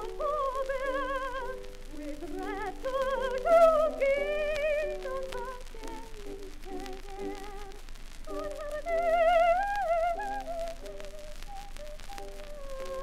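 Soprano voice with a wide vibrato singing an old art song, played from a 1925 HMV 78 rpm shellac record over a light instrumental accompaniment, with faint clicks of surface noise. The voice is loudest on two sustained high notes, about three and a half seconds in and again about nine seconds in.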